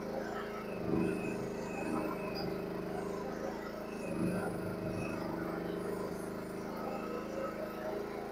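Mini excavator's small gasoline engine running at a steady speed while the arm and bucket are worked with the hand levers.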